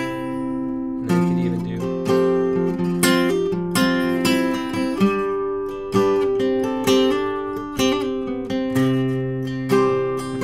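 Capoed steel-string acoustic guitar playing a chord riff: a strum about once a second, with single notes changing between the strums.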